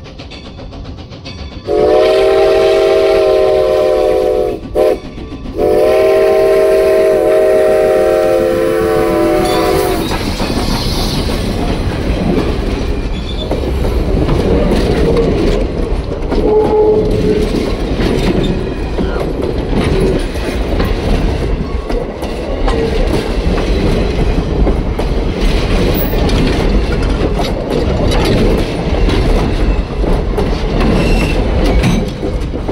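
Steam locomotive whistle blowing for a grade crossing: one long blast, a short toot, then a second long blast. After that the train rolls past at track level, its passenger coach wheels clattering over the rail joints over a steady low rumble.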